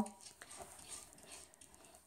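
Faint, irregular scratching of a cat's claws on a closed wooden door, the cat trying to get into the room.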